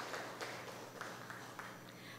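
Light applause from a seated audience, thinning to a few scattered claps and fading away.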